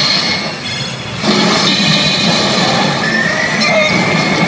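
CR Evangelion 8 pachinko machine playing its 'Beast Mode' reach effect through its speakers: a dense, noisy effect sound kicks in about a second in, and a rising whine begins near three seconds.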